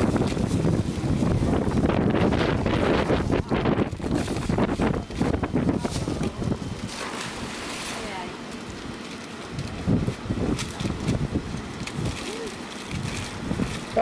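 Wind buffeting the camcorder microphone, heaviest for about the first seven seconds, with wrapping paper rustling and tearing as a present is unwrapped. Faint voices are in the background.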